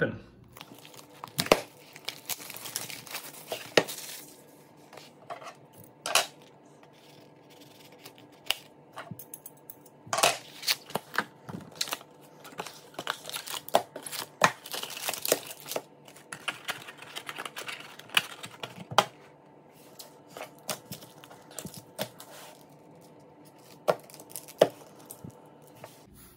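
Plastic shrink wrap torn and crumpled off a cardboard hockey-card hobby box, in irregular bursts of crinkling, then the wrapped card packs handled, with a few sharp knocks on the wooden table.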